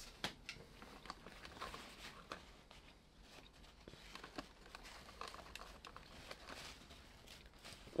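A very quiet room with faint, scattered small clicks and rustles of handling.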